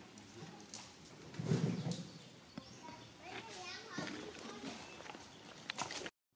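Voices in the background, some of them children's, with a louder low burst about a second and a half in.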